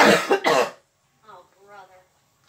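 A person coughing twice into a fist, two loud hacking coughs in quick succession in the first second.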